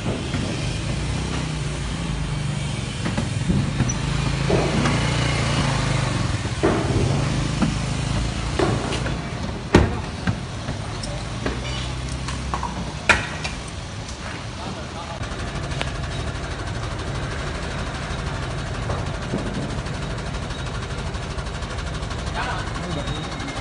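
A vehicle engine idling steadily, with people talking in the background and a couple of sharp knocks about ten and thirteen seconds in.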